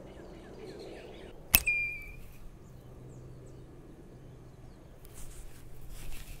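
Outdoor ambience with faint bird chirps. A single sharp click about a second and a half in is followed by a short, steady, high whistle-like chirp. Rustling noise comes in near the end.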